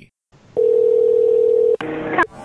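Telephone ringback tone heard down the line while an outgoing call rings: one steady ring of about a second, cut off abruptly as the call is answered.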